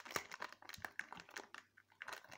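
Foil Pokémon card booster pack crinkling in the fingers as it is opened by hand, in quiet, irregular crackles.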